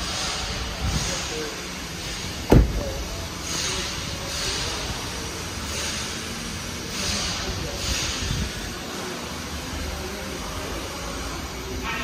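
A car door shut with one loud thump about two and a half seconds in, over the steady low rumble of a service shop with soft hisses coming every second or so.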